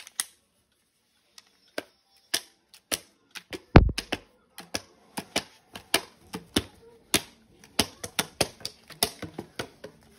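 Empty plastic water bottle squeezed and crinkled in the hands, giving an irregular string of sharp crackles and pops. One heavier thump comes about four seconds in.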